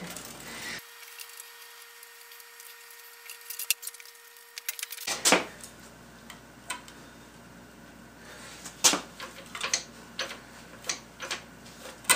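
Scattered knocks, clanks and clicks of the heavy cast-iron head unit of an antique Sipp drill press being shifted and worked by hand. It is quieter for the first few seconds, with a louder knock about five seconds in and several more after.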